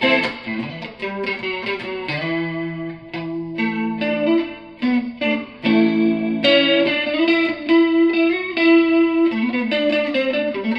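Electric guitar played through a Danelectro Big Spender rotating-speaker (Leslie-emulation) pedal and amplifier. It plays a melodic passage of picked notes and held chords that change every second or so.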